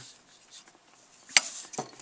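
Metal-bodied Stanley Odd Job tool being handled as its wooden ruler is fitted and tightened in it: a single sharp click a little past the middle, then a brief rattle and a lighter click.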